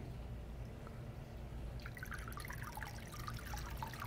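New salt water pumped through a hose into a reef aquarium, a quiet steady flow with faint trickling that picks up about halfway through. It is the refill after a water change, the flow throttled at a ball valve on the hose end until the pump chamber reaches its level.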